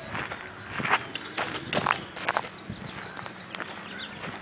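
Irregular footsteps with sharp clicks and crackles, several close together in the first two and a half seconds, then a few scattered ones.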